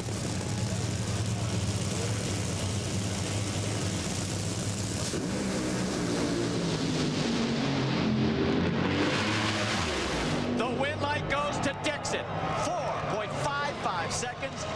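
Two nitromethane-burning Top Fuel dragsters, supercharged V8s, running at the start line, then launching about five seconds in. Their engine note climbs and sweeps as they pull away down the strip, then drops away after about ten seconds.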